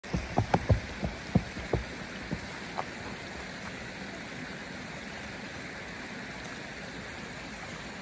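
Steady rush of a running creek. A run of soft, irregular thuds of steps on the dirt trail comes in the first three seconds, then only the water.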